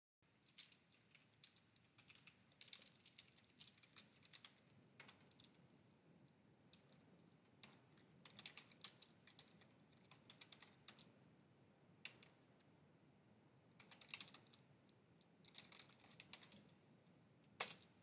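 Faint computer keyboard typing in short runs of keystrokes with pauses between, ending in one sharper, louder key strike near the end.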